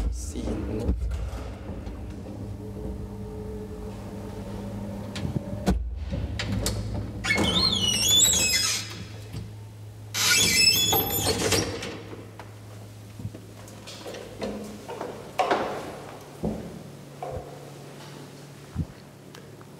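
Old traction elevator's collapsible metal cab gate being slid open, with two loud scraping, squealing rattles about seven and ten seconds in, over a steady low hum. Smaller knocks and clanks follow.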